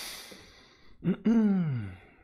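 A man breathes out noisily, then, about a second in, makes a voiced sigh that glides down in pitch.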